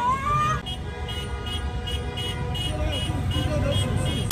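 Car horns honking in a quick repeated rhythm, about three short toots a second, over the low rumble of slow traffic. A brief rising cry comes at the start.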